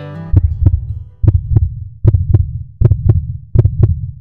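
Heartbeat sound effect: five low double thumps, lub-dub, at a steady pace of about eighty beats a minute.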